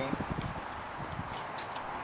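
Several soft, irregular low thumps, mostly in the first second.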